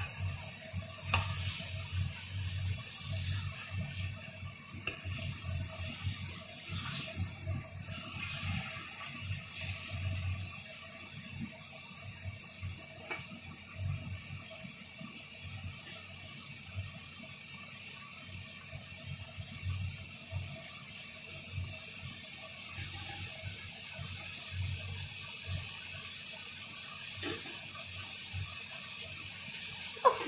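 Duck pieces sizzling in a wok over a gas flame, a steady frying hiss, with a spatula stirring and knocking against the wok, busiest in the first ten seconds or so.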